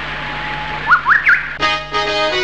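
Birds chirping over the steady rush of a stream: a few quick rising chirps about a second in. Keyboard music starts near the end.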